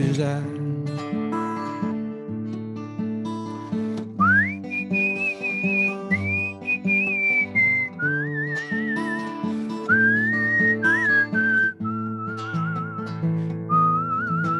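Acoustic guitar strummed in a slow ballad. About four seconds in, a man starts whistling the melody over it: a swoop up to a high note, then wavering phrases that step down lower toward the end.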